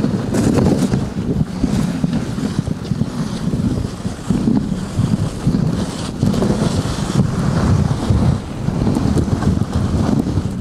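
Wind buffeting the microphone on a moving dog sled, a loud rushing noise that rises and falls, mixed with the sled's runners scraping over packed snow.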